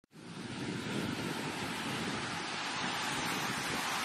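Steady rushing noise like wind or surf, fading in over the first half second and holding even, part of the opening logo sound effect.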